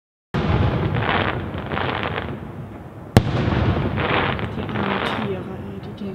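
Fireworks display: a dense, continuous rumble of shell bursts with several swells of crackling, cutting in suddenly just after the start. One sharp bang about three seconds in is the loudest moment.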